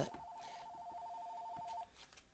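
Electronic telephone ringer sounding one ring: two tones alternating rapidly in a warble, lasting a little under two seconds before it cuts off.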